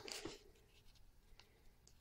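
Near silence, with a faint, brief scratchy rustle at the start as a sheet of cut adhesive vinyl is handled.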